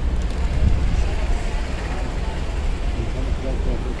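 Cotton fabric rustling as a printed suit piece is unfolded and held up, over a steady low rumble and faint indistinct voices in the background.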